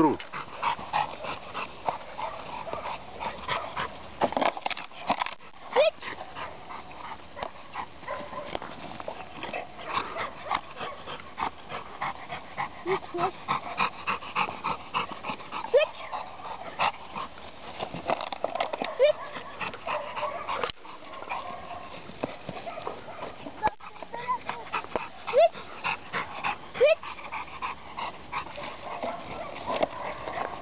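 American Staffordshire Terrier giving short, rising high-pitched whines now and then while playing, with scattered short sharp noises between them.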